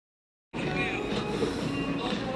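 Dead silence, then about half a second in a dense, steady mix with a voice in it cuts back in abruptly.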